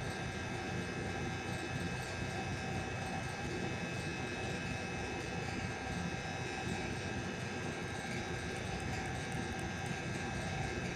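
Steady machine hum and hiss with several thin, high, steady whining tones, unchanging throughout.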